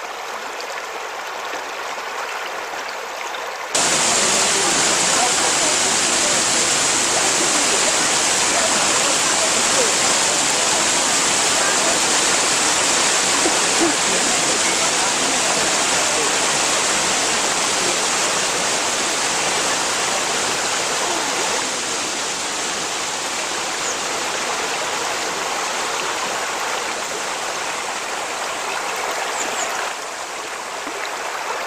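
Falling water of a 25 m mountain waterfall rushing steadily. It turns suddenly louder about four seconds in and eases slightly a little past the middle.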